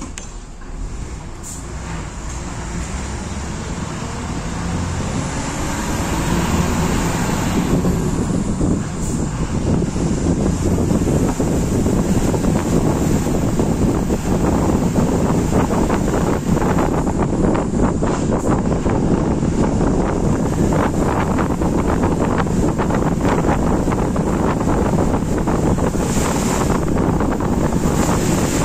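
Wind and road noise of a moving non-AC sleeper bus, heard at its side window. The engine note rises over the first several seconds as the bus picks up speed, then a steady loud rush of wind buffets the microphone.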